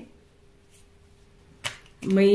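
Quiet room with a faint steady hum, and a single short, sharp click about one and a half seconds in.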